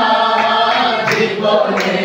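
A congregation of voices singing a hymn together, holding each note and moving from note to note.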